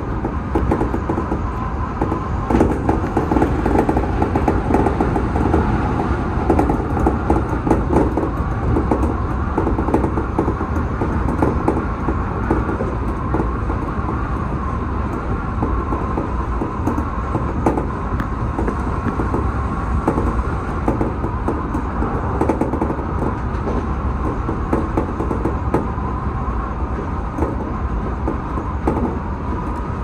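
Odakyu 1000 series electric train running, heard from inside the front car: a steady wheel-on-rail rumble with frequent short clicks and knocks from the track. It is a little louder in the first half and eases slightly later on.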